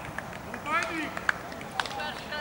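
Outdoor voices at a football pitch: a raised voice calls out briefly about a second in, followed by two sharp knocks.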